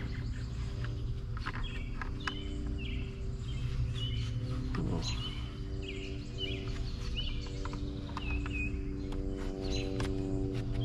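Birds chirping again and again over a steady low hum, with scattered light clicks from the pole saw head being handled.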